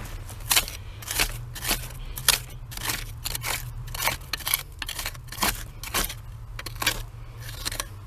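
A thin metal hand tool picking and scraping at packed dirt in quick, uneven strokes, about three a second, each with a sharp scratchy click.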